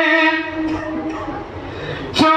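A man chanting a naat ends a long held note, which fades out about half a second in and leaves a reverberant tail over a low rumble.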